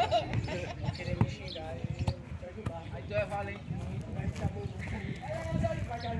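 Untranscribed voices calling out across an amateur football pitch, in short scattered bursts, with a few sharp dull thumps in between.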